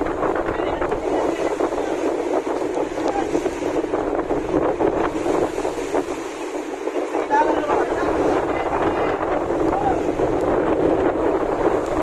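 Strong wind buffeting the microphone over rough sea water churning and slapping against moored boats' hulls in a storm, a loud, steady rush throughout.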